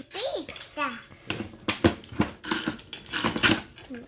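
Sharp clicks and knocks of screws and a steel TV mount plate being handled against the plastic back of a TV, the loudest knock about two seconds in, with a child's voice briefly near the start.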